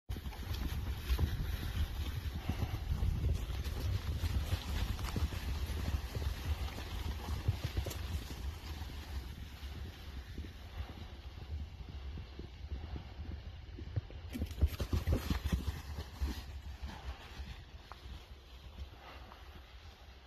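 Hoofbeats of a herd of horses running on grass pasture: a dense, irregular thudding, heaviest in the first several seconds and again about fifteen seconds in, then thinning out as the herd moves away.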